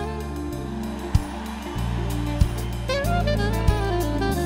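Live soul band playing a slow song's instrumental intro: a soprano saxophone melody over keyboard and held bass notes, with a drum hit about every second and a quarter.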